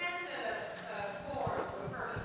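Faint speech away from the microphone: an audience member asking a question. A few soft knocks sound under it.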